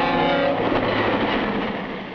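Passenger train rushing past, a broad, even rumble that slowly fades.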